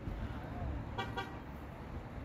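A car horn gives two short toots in quick succession about a second in, over low wind rumble on the microphone.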